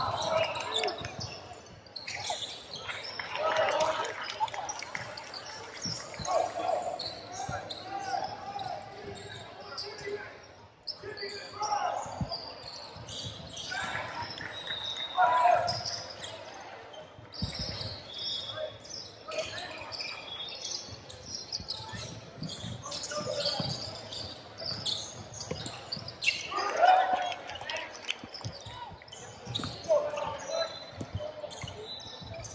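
Basketball being dribbled on a hardwood court, with players and onlookers calling out now and then, echoing in a large gym.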